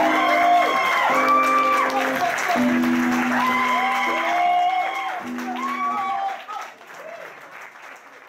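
Audience applause with cheering voices as an acoustic song ends, fading away over the last two seconds.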